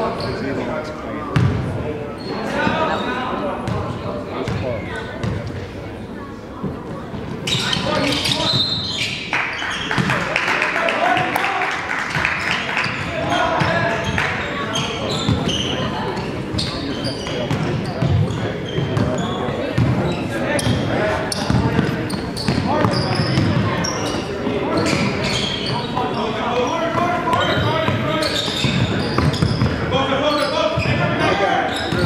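Basketball game in an echoing gym: the ball bouncing on the hardwood court amid a steady buzz of spectators talking and calling out. A sharp knock about a second and a half in.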